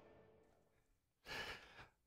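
Near silence, then about a second and a quarter in, a man's short intake of breath close to the microphone.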